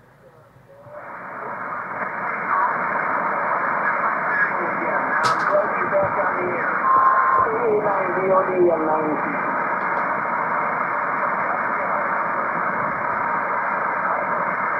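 HF single-sideband receiver audio on the 40 m band: even static that rises from near quiet over the first couple of seconds as the equalizer knob is turned, with a weak station's voice faintly audible under the noise. A short steady whistle comes a little past the middle, and there is one sharp click about five seconds in.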